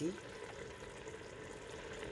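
Thick tomato-and-chilli sauce boiling hard in a stainless steel pot, a low, steady bubbling and sizzling.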